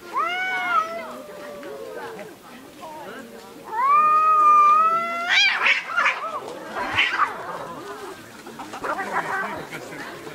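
Two domestic cats caterwauling at each other in a standoff before a fight: a long wavering yowl at the start, then a louder, rising howl about four seconds in that shoots up into a screech at its end, followed by harsher, noisy cries.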